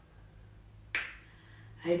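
A single sharp click about a second in, over a faint low hum; a woman's voice starts just at the end.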